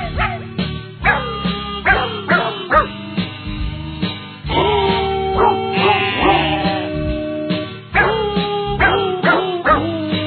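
Novelty pop record in which pitched dog barks sing the melody over a backing band: a quick run of short, downward-falling barks, with two longer held notes in the middle and near the end.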